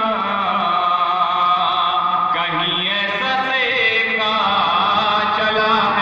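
A man's voice, amplified through a microphone, chanting devotional verse (manqabat) in a melodic, unaccompanied style. He holds long notes with a wavering pitch.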